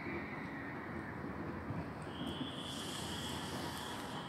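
Outdoor city background noise: a steady low rumble, with a faint high steady whine and a rise in hiss coming in about two seconds in.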